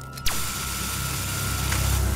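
Cartoon sound effect of a spy wristwatch gadget: a sharp click about a quarter second in, then a steady hissing buzz with a thin high tone as its beam burns into a door lock.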